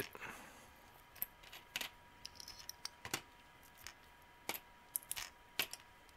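Small metal binder clips being unclipped from a mesh stencil and handled: a scatter of light metallic clicks and clinks, irregularly spaced, about a dozen over several seconds.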